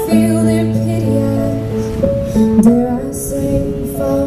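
Live slow song played on a stage keyboard and a cello, with the cello holding long low notes and the keyboard sounding chords above them.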